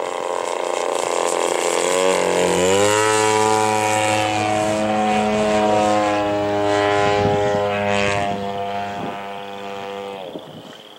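Large-scale RC aerobatic plane's 85cc gas engine and propeller in flight. The engine note drops in pitch about two to three seconds in, then holds steady.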